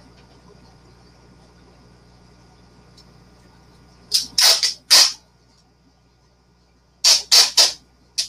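Clear packaging tape being pulled off its roll twice, each pull about a second long and made of a few harsh bursts: once about four seconds in and again near the end.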